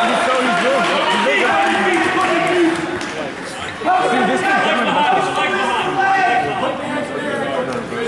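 People's voices talking and calling out in a large gym, several voices overlapping.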